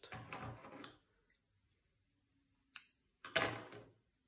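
Hands handling yarn and wooden double-pointed knitting needles. There is a soft rustle in the first second, a short sharp click a little under three seconds in, then another brief rustle.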